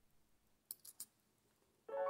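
Three faint, short clicks about a second in, from handling the watch case and the ring being fitted around the movement; otherwise near silence, until piano music starts near the end.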